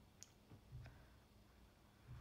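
Near silence: faint room tone with two soft clicks, one about a quarter second in and another near the middle.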